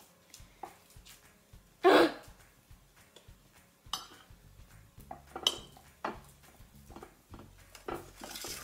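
Metal stirrer and spatula knocking and scraping against a glass baking dish and a ceramic bowl while stirring a thick glue-and-instant-snow slime mixture, in scattered light knocks with one louder knock about two seconds in.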